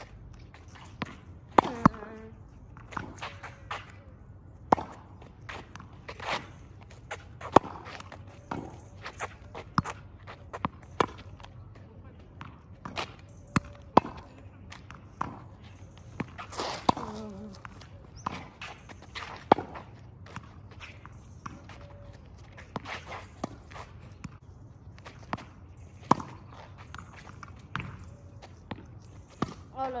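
Street tennis rally on asphalt: sharp pops of a racket striking a tennis ball and the ball bouncing on the road, at irregular intervals, with shoes scuffing the road between. A short voice sound near the start and again about halfway through.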